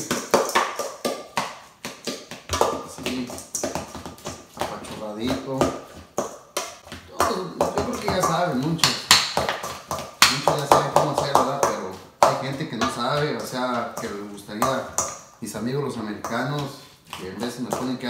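A metal utensil clicking and scraping against a stainless steel bowl in many quick, irregular taps while mashing and mixing avocado into guacamole. A man's voice can be heard over it in several stretches.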